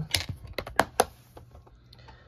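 Plastic multi-disc DVD case being handled, its hinged disc tray flipped and the case closed: a quick run of sharp plastic clicks and taps in the first second.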